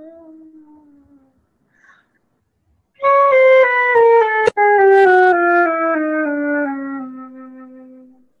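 A flute plays a descending chromatic scale from C, stepping down about an octave at roughly three notes a second and ending on a held low note that fades out. The sound comes over a webinar connection and drops out briefly about halfway through the scale.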